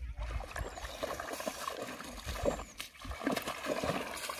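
Irregular splashing and sloshing of water from a hooked rohu thrashing at the surface as it is played on a rod in shallow water.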